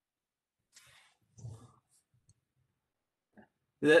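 Mostly silence in a pause of a voice-call lecture, broken by a few faint, short low sounds and tiny clicks, then a voice starting to speak near the end.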